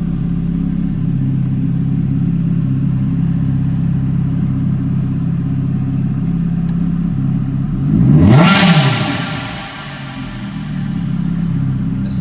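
Ferrari F430's 4.3-litre V8 idling steadily, heard from inside the cabin, with its exhaust valves wired open. About eight seconds in, a single quick blip of the throttle makes the engine note rise and fall within a second, and then it settles back to idle.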